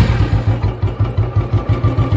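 Motorcycle engine idling with a steady low thump, about six beats a second.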